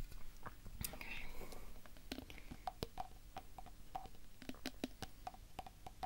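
Fingernails tapping on objects in irregular light taps, some giving a short ringing tone.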